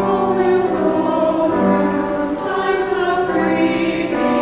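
A choir singing, with held chords that change every second or so.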